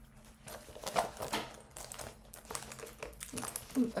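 Irregular rustling and small clicks and taps of a leather handbag being handled.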